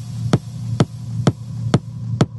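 Techno track: a kick drum about twice a second over a steady low synth hum, the sound swelling between beats. Near the end the top end is filtered away.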